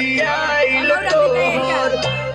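A song with a singer's voice gliding up and down over a steady instrumental backing, played loud through large PA loudspeakers.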